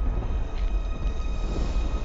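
Deep, steady rumble from the film's soundtrack, with faint high held tones above it.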